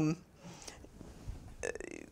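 A woman's voice trailing off at the start, a quiet pause of room tone, then a brief creaky, rattling vocal sound near the end as she starts to speak again.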